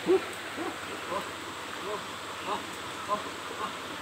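An animal's hooting call repeated in a steady series, about one short note every half second or so, each note rising and falling in pitch; loud at first, then fainter, over the steady rush of a stream.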